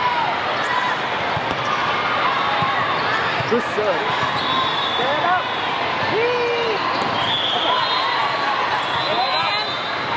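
Busy indoor volleyball hall: volleyballs thudding as they are served, hit and bounced on several courts, sneakers squeaking on the court floor, and many voices calling and chattering, echoing in the large hall.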